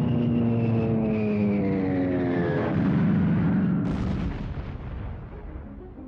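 Warplane engine drone with several tones sliding downward in pitch as the aircraft dives, then a bomb explosion just before four seconds in, its rumble fading away.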